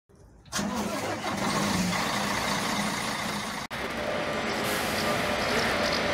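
Mercedes-Benz Travego 15 SHD coach's diesel engine running steadily as it approaches, with road noise. The sound cuts out for an instant just past halfway.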